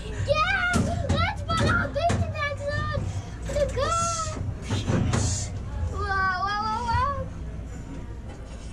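Children's voices making high-pitched playful sounds without clear words, ending in a wavering held call near the end.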